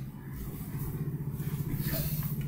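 A steady low motor hum, like an engine running, growing slightly louder.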